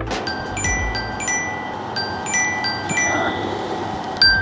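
A bright bell-like chime melody of high, clear notes, the same short phrase repeating about every two seconds over a steady low hum.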